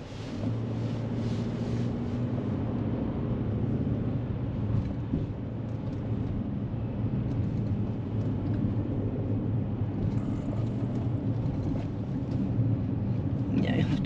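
Inside a moving car's cabin: the steady low drone of engine and tyre noise while driving at town speed.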